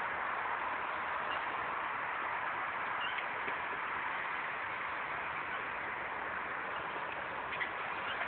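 Steady outdoor background hiss with no distinct events, only a couple of faint ticks.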